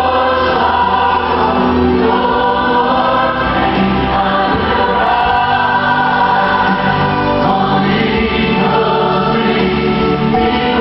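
Church choir singing a worship song, with sustained held notes.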